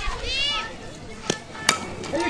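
A softball bat hitting a pitched ball: two sharp cracks a little under half a second apart in the second half. A high voice calls out briefly before them.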